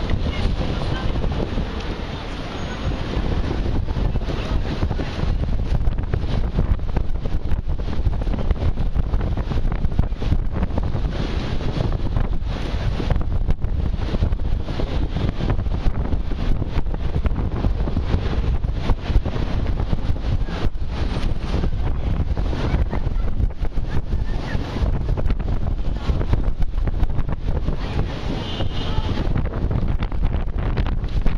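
Wind noise on the microphone, a continuous low rumble with a busy pedestrian street faintly underneath.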